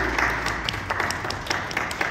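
A small group applauding, with separate hand claps audible, thinning out near the end.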